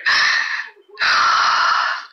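A woman crying: two long, breathy sobs, the second starting about a second in.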